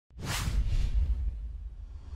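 Intro whoosh sound effect: a sudden rushing swish that starts a moment in and dies away within about half a second, over a deep low rumble that slowly fades.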